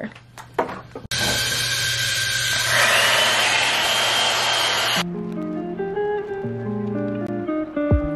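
Hair dryer blowing from about a second in, a steady rush of air with a whine whose pitch rises partway through, then cutting off abruptly about five seconds in. Background music with plucked guitar follows.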